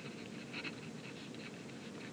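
Pen writing on paper: faint, irregular scratching strokes as words are handwritten.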